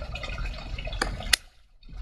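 Two sharp snips of scissors a third of a second apart, cutting off a phalaenopsis orchid leaf; the second snip is louder.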